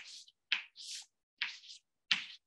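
Chalk drawing lines on a blackboard: three short strokes, each starting with a sharp tap and running on as a brief scratchy scrape.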